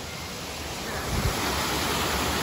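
Water rushing over rocks in a shallow forest stream, a steady hiss that grows louder about a second in. Wind buffets the microphone once, a brief low rumble.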